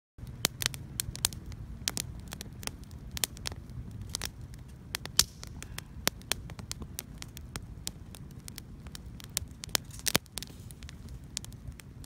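Small campfire of dry kindling and sticks crackling, with irregular sharp pops and snaps over a low steady rumble.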